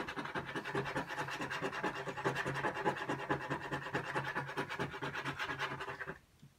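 A coin scraping the coating off a paper scratch-off lottery ticket on a tabletop, a fast, even run of short scratching strokes that stops right at the end.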